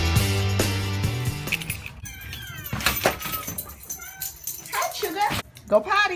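Music dies away in the first second or two. Then a small dog whines and yelps in high, squeaky calls, rising and falling in pitch, in excited greeting at the door, loudest near the end.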